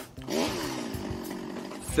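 A chainsaw running for about a second and a half, dipping slightly in pitch, as a comic sound effect.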